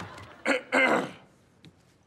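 A person clearing their throat in two short bursts about half a second in, followed by a faint click.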